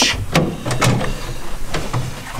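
Clothing rustling, with a few light knocks and clicks, as a person shifts and squeezes into a cramped race-car seat, over a low steady hum.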